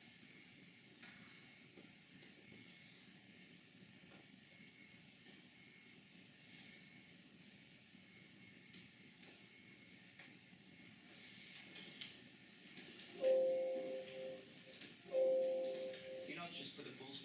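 Quiet room tone, then near the end two loud, steady horn-like tones, each about a second long and about two seconds apart.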